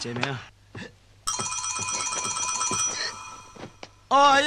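An electric bell rings once, a fast metallic trill held for about a second and a half that then dies away.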